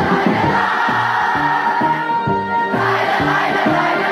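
A large crowd of schoolchildren singing together in unison over a loud music backing track with a steady, repeating bass line.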